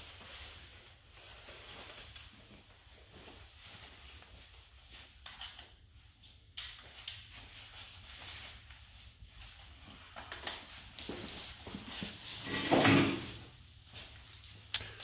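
Quiet rustling and small clicks as a painter's protective suit and hood are handled and put on, with a brief louder burst of noise near the end.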